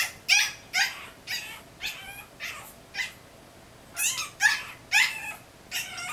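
Yorkshire terrier puppy yapping in short, high-pitched barks, about two a second, with a pause of about a second midway and louder barks after it.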